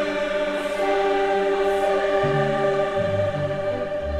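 Concert choir singing a Christmas carol in long, held chords; a lower part comes in about two seconds in.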